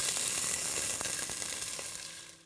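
Soaked long-grain rice dropping into hot ghee in a steel pot: a loud, even sizzle that fades toward the end, with a few light ticks.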